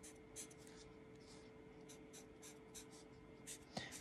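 Black Sharpie marker drawing short strokes on paper: a faint series of quick scratches, a few a second.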